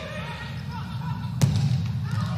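A volleyball struck hard once, a single sharp smack about one and a half seconds in, over a steady murmur of crowd and players' voices in the gym.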